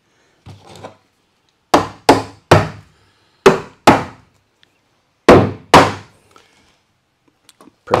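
Hammer striking a tongue-and-groove pine wall board seven times, in three short runs of blows, each blow ringing off briefly.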